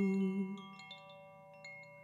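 Koshi chime swayed by hand, its clapper tapping the tuned metal rods in a few light strikes that ring on as faint, overlapping steady tones. A hummed note fades out about half a second in.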